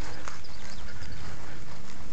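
Steady outdoor background hiss with a few faint clicks scattered through it.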